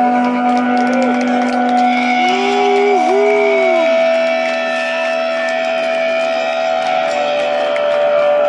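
Amplified electric guitars holding droning notes with no drums or bass, one note swooping up, dipping and sliding back down in pitch near the middle.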